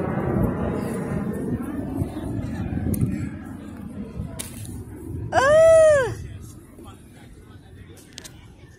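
A single loud, high-pitched vocal cry lasting under a second about five seconds in, its pitch rising and then falling, over faint voices in the first few seconds.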